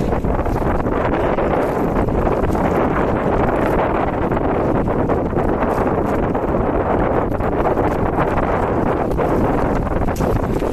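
Wind buffeting the microphone on an open boat at sea: a steady, loud rushing noise.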